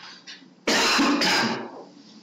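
A man clearing his throat: a loud, rough burst in two quick parts, lasting about a second and starting just past half a second in.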